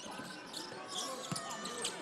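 Faint basketball game sound: a ball being dribbled on a hardwood court, with low arena background noise.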